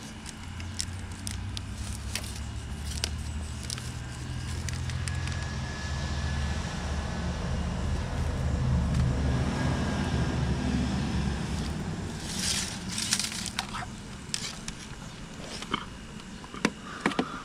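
Aluminium window screen frames clicking and rattling as they are handled, over a low rumble that builds through the middle and stops about twelve seconds in; a short burst of scraping rustle follows.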